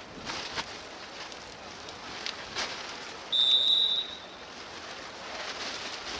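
Referee's whistle: one steady, high-pitched blast of about a second, a little past the middle, signalling that the penalty kick may be taken. Underneath runs a steady outdoor hiss with a few faint knocks.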